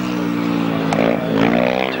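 A solo grasstrack motorcycle's single-cylinder engine running hard. Its pitch dips slightly and then climbs as the bike accelerates away, with one sharp click about a second in.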